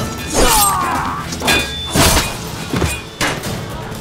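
Sword-fight sound effects over a dramatic music score: several sharp hits and blade clashes, some with a brief metallic ring, and a man's cry in the first second.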